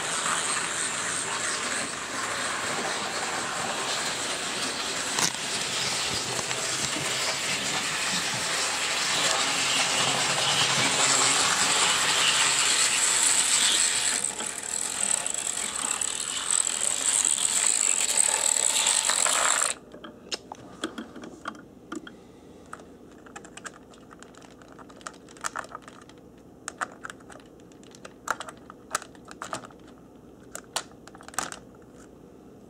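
Model train locomotive running: a steady whirr of electric motor and gears with a high whine, which cuts off suddenly about two-thirds of the way through. After that come scattered light clicks and taps as the locomotive model is handled on the track.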